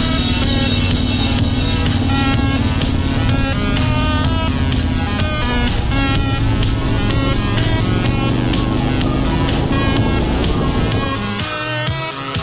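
Motorcycle engine running under way, its pitch climbing over several seconds as it accelerates, then dropping away near the end; electronic background music with a steady beat plays over it throughout.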